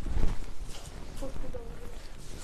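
Saree fabric rustling and flapping as it is lifted and shaken open, with a few soft knocks of handling, loudest just after the start. A faint voice sounds briefly in the middle.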